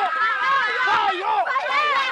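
Loud shouting voice running on without a pause, its high pitch swooping up and down.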